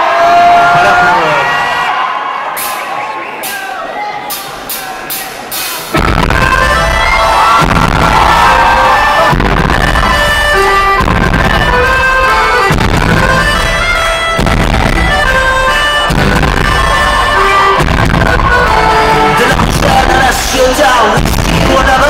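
Live rock band starting a Celtic-flavoured song: a quieter melodic intro, then about six seconds in the full band with drums comes in loud with a steady beat.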